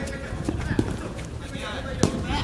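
Players' running footsteps and ball touches on artificial turf during a futsal game, as a string of light knocks, with indistinct voices of players calling out.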